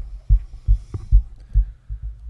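Dull low thumps, about three a second and unevenly spaced: handling knocks on or near the recording microphone.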